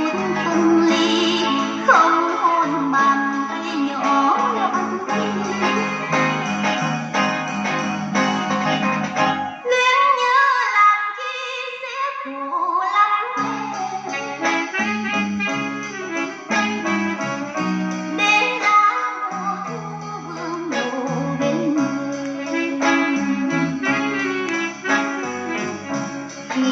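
Music played from a vinyl record on a Sharp GX-55 combo stereo, heard through its built-in speakers. The bass drops out for a few seconds around the middle, leaving only a gliding melody line, then returns.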